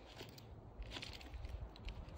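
Faint footsteps crunching over the loose stones and gravel of a dry creek bed, a scatter of small irregular crunches and clicks.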